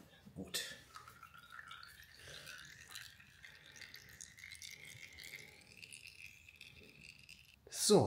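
Oil filter being unscrewed by hand from a Suzuki SV650's V-twin engine and lifted away, oil dripping from it into a drain pan, with a click about half a second in. A faint tone slowly rises in pitch from about a second in until shortly before the end.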